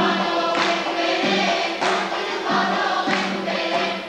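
Armenian folk ensemble singing in chorus, with held notes, live on stage.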